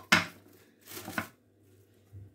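A ceramic plate knocking against a marble worktop as it is moved: one sharp knock just after the start, then a few softer knocks about a second in.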